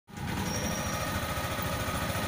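A small motorcycle engine running steadily with a rapid, even pulse as it travels along.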